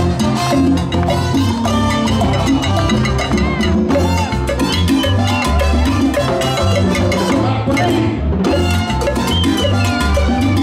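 Live salsa band playing amplified, with congas and timbales driving the rhythm over a moving bass line.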